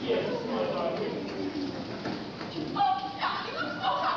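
Indistinct, overlapping voices of children and adults chattering in a hall, with a short held high vocal tone just before three seconds in.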